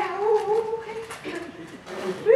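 A person's voice making a drawn-out, wordless whining sound that wavers in pitch for about a second, followed by a shorter one.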